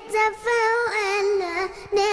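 A young girl singing solo into a microphone: an Arabic vocal line with wavering, ornamented notes, sung in short phrases with brief breaths between them.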